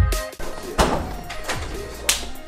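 Electronic background music whose heavy bass kicks stop just after the start, leaving a sparser stretch with two thunks under a second apart.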